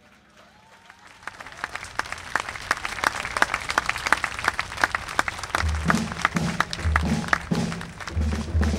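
Audience applause swelling from quiet into a steady clapping. About five and a half seconds in, a drum kit starts a repeating pattern of low bass drum and tom thuds under the clapping.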